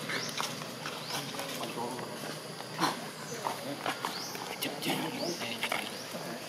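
Short, high animal calls that sweep up and down in pitch, a few times, over a low continuous murmur.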